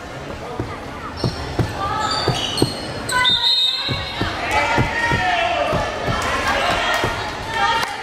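A volleyball bounced on the hardwood gym floor, about two thuds a second, under the chatter of players and spectators in a large echoing gym. About three seconds in comes a short, high whistle blast.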